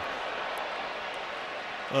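Steady wash of stadium crowd noise from a football broadcast, with no single distinct event.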